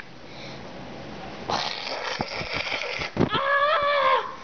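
A breathy rushing noise with a few small clicks, then a drawn-out, wavering vocal sound from a person near the end.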